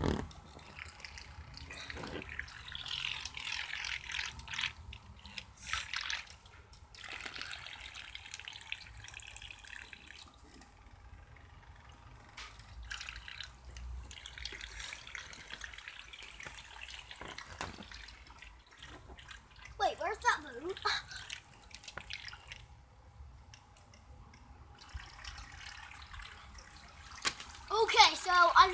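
Faint water sounds from small toy boats moving across a paddling pool, with scattered small clicks and a faint steady tone in the second half. Brief voices come in about twenty seconds in.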